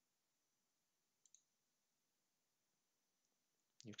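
Near silence, with a faint, quick double click of a computer mouse about a second in.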